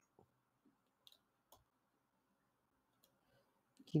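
A few faint, scattered clicks from computer mouse and keyboard use.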